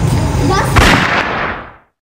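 One sharp bang about a second in, with a short ringing tail; then the sound fades out to silence.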